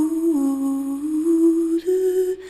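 A woman's voice humming a slow, wordless melody in a song, long held notes that step down about a third of a second in and then climb back up in two steps near the end.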